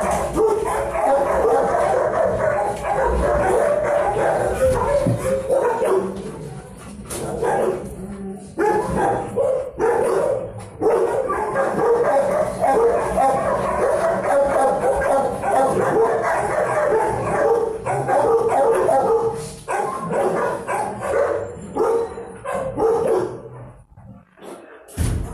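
Many dogs barking and yipping at once in a kennel block, a continuous din with short lulls about six to eight seconds in and again near twenty seconds.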